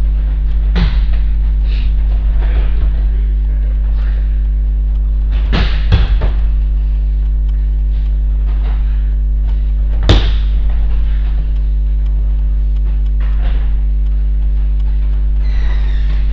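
Bodies landing on judo tatami mats during rolls and breakfalls: a few dull thuds, one about a second in, a cluster around six seconds and the loudest about ten seconds in. A steady low electrical hum runs underneath throughout.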